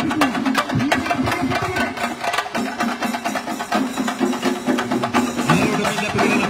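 A group of chenda drums beaten rapidly with sticks, a dense, unbroken roll of strokes.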